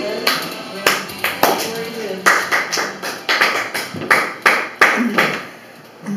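A few people clapping in applause at the end of a sung karaoke song: separate, uneven handclaps, roughly two a second, dying away near the end.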